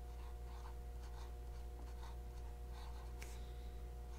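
Platinum 3776 fountain pen with a three-tined music nib writing on paper: faint scratching of the nib in a run of short strokes.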